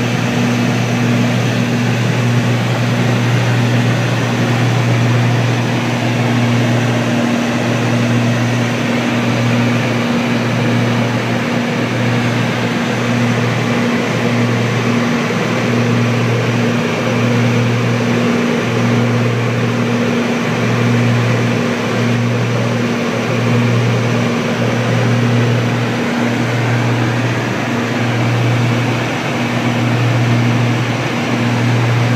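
Piper Seneca III's twin turbocharged Continental six-cylinder engines and propellers heard from inside the cockpit in cruise flight. They make a loud, steady drone with a slow, regular throb about every second and a half.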